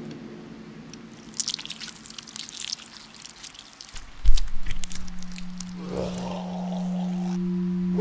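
Animated-film sound design with no dialogue. Scattered crackles come in the first few seconds, then a low thud just past the four-second mark. A steady low drone starts with the thud and holds on, with a brief rushing swell about six to seven seconds in.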